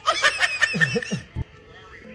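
Canned laughter sound effect: a burst of several voices laughing for about a second and a half, ending with a few falling 'ha-ha' notes.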